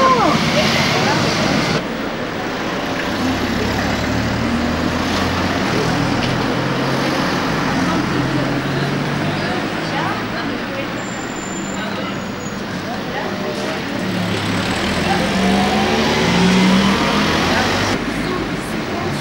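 Urban street traffic: motor vehicles running and passing close by in a steady, dense noise, with a low engine note rising in pitch near the end.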